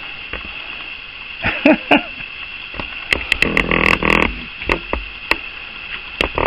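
A raccoon growling at close range: two short growls about a second and a half in, then a longer, louder growl about three seconds in, with scattered sharp clicks around it.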